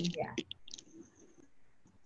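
A few short, quiet clicks in the first second, after a brief spoken "yeah", with a faint high thin tone for under a second; the rest is quiet.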